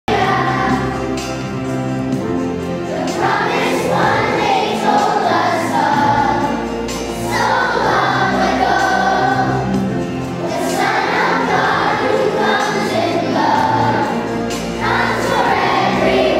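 Children's choir singing a Christmas song in a gymnasium, with low sustained accompaniment notes under the voices.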